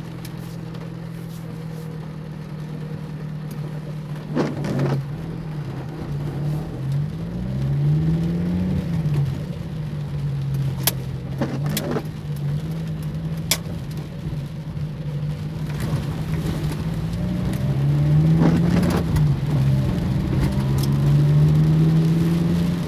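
Car engine heard from inside the cabin while driving in slow traffic, its low hum rising and falling in pitch several times as the car speeds up and eases off. A few short, sharp clicks sound over it.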